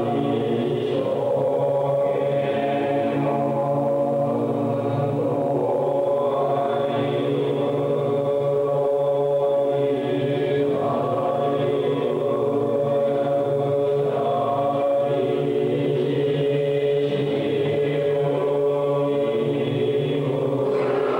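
Wrestling entrance music of chanting voices in long held notes over a steady low drone, played through the arena's speakers.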